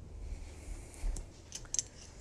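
A few light clicks from a small bottle of almond extract being handled and its cap worked, most of them in the second half.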